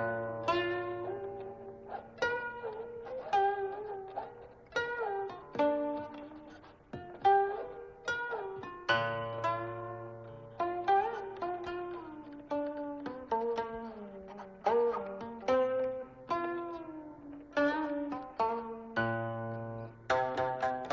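Background music on a plucked zither-like string instrument: single notes and small chords plucked about once a second, each dying away, many bent up or down in pitch after the pluck.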